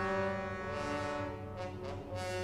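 Orchestral music: the brass section holds long chords, with only small shifts in the notes.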